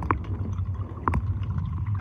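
Muffled water noise heard through a camera microphone submerged in a swimming pool: a steady low rumble, with two short gurgling blips about a second apart from scuba regulator bubbles.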